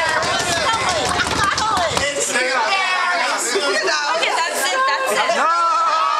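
Several people talking over one another and laughing in excited chatter, with one long held high-pitched voice starting near the end.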